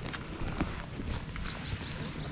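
Soft handling noises of a fabric tote bag, a few light clicks and rustles over a steady low outdoor rumble, with a couple of faint high chirps in the middle.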